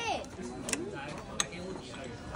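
Two short, sharp clicks from a gachapon capsule toy vending machine, about two-thirds of a second and a second and a half in, as the capsule is taken from the outlet. Faint voices sound underneath.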